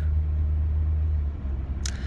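Steady low rumble of a vehicle's engine heard from inside the cabin, easing off slightly near the end.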